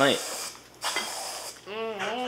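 Aerosol whipped-cream can spraying onto a dessert plate in two hissing bursts, the second about a second in. A short vocal sound follows near the end.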